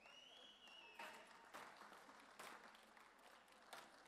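Faint, sparse hand-clapping: light applause, barely above near silence, with a few slightly louder claps.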